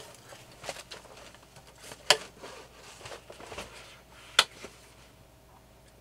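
Quiet room with faint rustling of bedding as people move under a duvet, broken by a few sharp clicks, the loudest about two seconds in and again about four seconds in.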